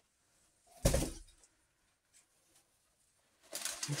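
A man's short, low grunt about a second in, while he is bent into a box. Packing paper starts rustling near the end.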